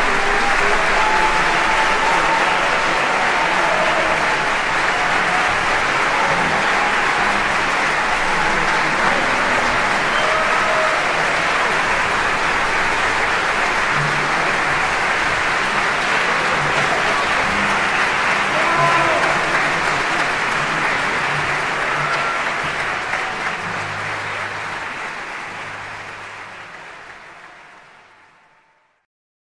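Concert-hall audience applauding, a dense steady clapping that fades out over the last several seconds.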